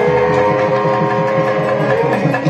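Devotional Ayyappa bhajan music: a hand drum keeps a fast, steady beat under a long held note, with light regular ticks above.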